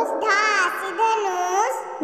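A voice singing a Hindi alphabet rhyme for children over backing music.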